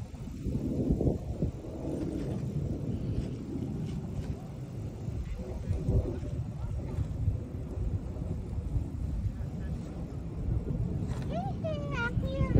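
Wind buffeting a phone microphone outdoors: a low, uneven rumble, with faint voices now and then and a short rising call near the end.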